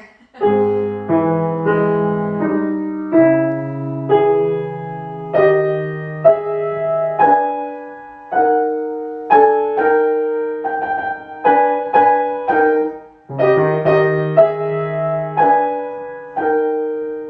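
Grand piano played at a slow, measured pace: chords struck about once a second and left to ring over held bass notes, starting about half a second in.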